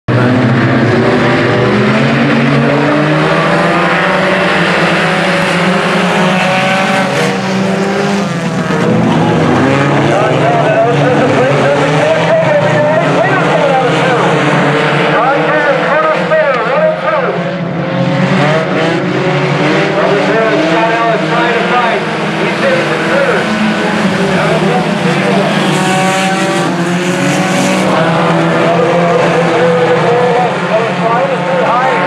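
A pack of IMCA sport compact race cars racing on a dirt oval, their four-cylinder engines running hard together, with the pitch rising and falling continuously as the cars accelerate and back off through the turns.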